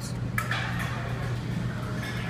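Claw crane arcade machine running with a steady low hum, and one sharp click about half a second in.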